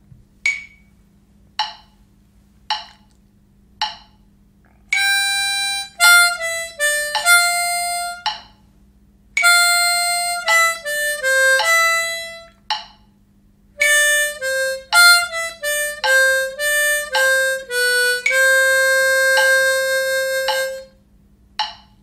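Diatonic harmonica playing a rhythm exercise over a metronome: four metronome beeps about a second apart as a count-in, then a phrase of quarter notes and quick triplet runs. It ends on one long held note lasting about three beats.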